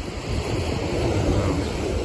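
Steady wash of ocean surf with wind buffeting the microphone in a low rumble.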